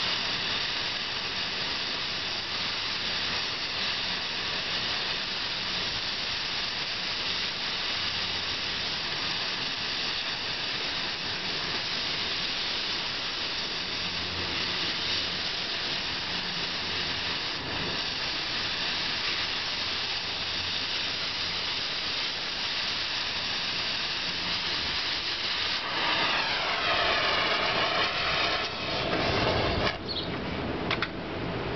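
Oxyacetylene cutting torch hissing steadily as its oxygen jet cuts through steel. About 26 seconds in, the hiss grows louder with a shifting, sweeping tone, then stops just before the end.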